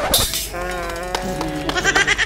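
A bleat like a sheep's, one long held call of just over a second, coming after a brief burst of hiss.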